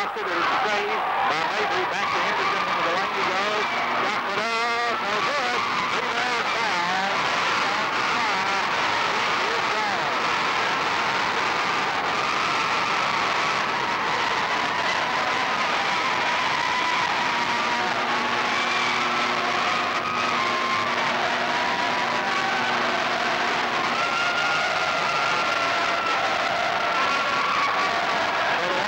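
Crowd at an indoor basketball game: a loud, steady din of many voices shouting and cheering.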